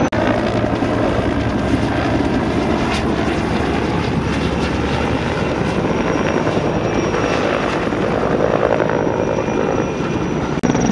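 Helicopter flying overhead: the steady chop of its rotor blades and engine running without a break.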